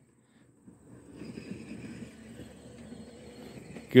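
Faint outdoor background in a rural yard: a low, even rustling haze with thin, steady high tones coming in about a second in, after a near-silent first half-second.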